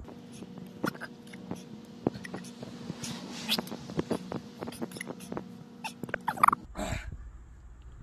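A man breathing hard and sniffing with wet mouth clicks and lip smacks while his mouth burns from a super-hot pepper. There is a forceful breathy exhale about three seconds in and a short high whimpering vocal sound a little after six seconds.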